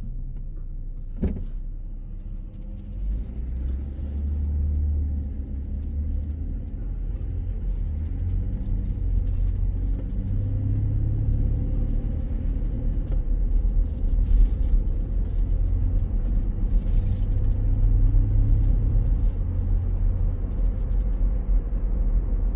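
Cabin noise of a car pulling away from a stop and driving on: a low engine and road rumble that grows louder from about three seconds in. A single sharp click comes about a second in.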